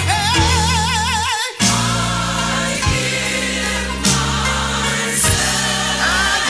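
1980s gospel duet recording: a lead singer holds a long note with wide vibrato over the band. After a short break about a second and a half in, the full arrangement returns, with several voices singing in harmony.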